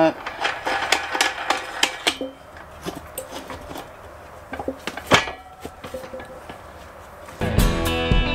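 Light metallic clicks and clinks at irregular intervals as a washer and lock nut are threaded by hand onto a steel J-hook bolt on a motorcycle tie-down bar. Loud guitar music comes in near the end.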